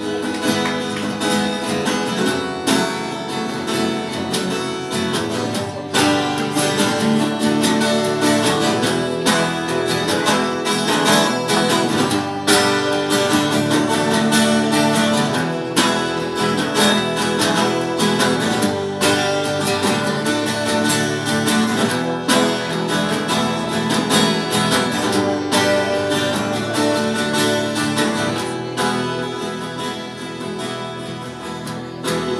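Instrumental break on two guitars, with no singing: a continuous run of plucked notes and chords at a steady level.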